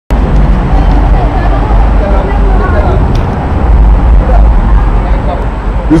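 Faint voices of people talking over a loud, steady low rumble.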